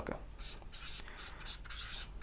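Felt-tip marker writing on flip-chart paper: a run of short, faint scratchy strokes, several a second, as letters are drawn.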